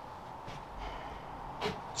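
Quiet room tone with a man's breathing close to the microphone, including a quick breath in near the end.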